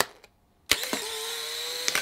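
Polaroid SX-70 instant camera firing: a shutter click, then the film-ejection motor whirring steadily for about a second as the print is pushed out, ending in a small click.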